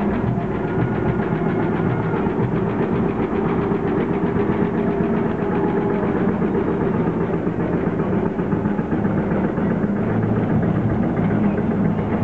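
Vintage tractor engine running steadily at a slow, even chug as the tractor drives past pulling a trailer.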